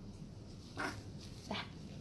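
Newborn baby fussing with two short cries, about a second and a second and a half in.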